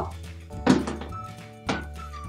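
Two short thuds about a second apart as dog toys are set down on a wooden table, over quiet background music.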